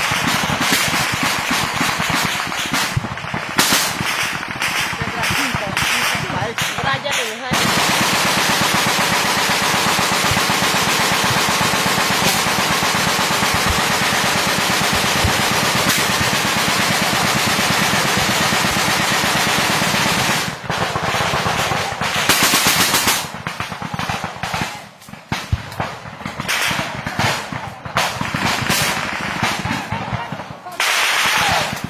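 Automatic gunfire in a firefight: rapid bursts at first, merging about seven seconds in into a continuous barrage lasting some thirteen seconds, then breaking up into scattered bursts and single shots.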